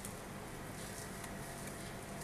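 Faint soft rustling of a thin sheet of whole-wheat dough being rolled up onto a wooden rolling pin, over a steady low hum.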